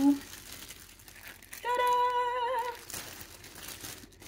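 Packing paper crinkling as a shipping box is unpacked, with a woman's voice holding one high note for about a second in the middle.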